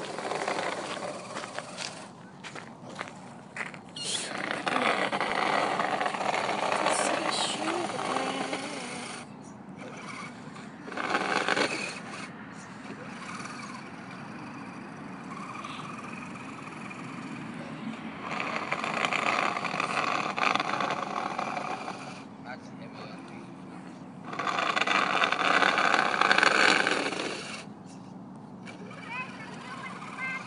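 Scale RC truck with a plow blade, pushing and scraping in several noisy bursts of a few seconds each, with a steady low background between them.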